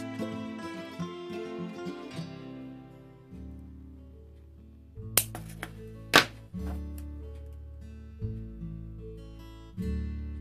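Background music with a plucked acoustic guitar, held notes changing every second or so. Two sharp clicks sound about five and six seconds in.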